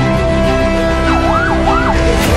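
Background music with sustained notes. About halfway in, a siren yelps in fast rising-and-falling sweeps, about three of them in under a second.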